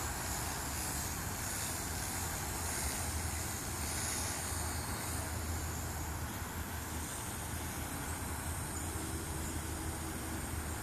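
Mini quadcopter's small motors and propellers whining faintly and high, the pitch shifting as it flies at a distance, over a steady low rumble.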